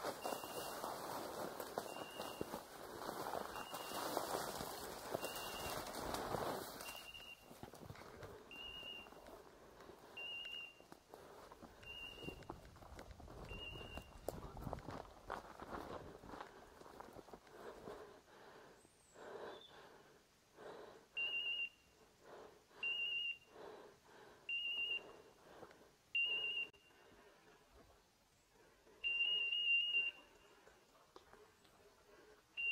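A dog's beeper collar sounding a short, high beep about every second and a half, the point-mode signal that the pointer is standing on point, with a gap of several seconds in the middle. Over it a hunter pushes through dense brush, rustling loudly for the first several seconds and then crunching more softly on dry leaf litter.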